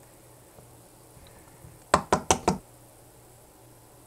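Four quick, sharp knocks about two seconds in as plastic hand sanitizer bottles are handled and knocked together.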